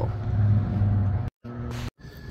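A steady low mechanical hum with faint steady tones above it, cut by two brief dropouts to silence near the end.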